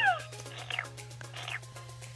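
Background music, with two short high falling squeaks from a Baby Alive doll's electronic baby voice as its toy bottle is held to its mouth.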